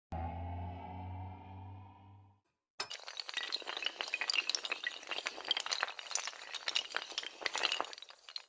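Animated logo-intro sound effects: a low humming tone that fades out over about two seconds, then a brief gap, then a long dense clatter of shattering, breaking pieces that runs for about five seconds.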